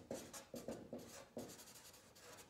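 Felt-tip marker writing on flip-chart paper: a quick run of short, faint scratching strokes as a word is written.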